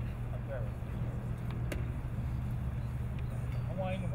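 Faint, scattered voices of a small gathering over a steady low rumble, with a single light click a little under two seconds in.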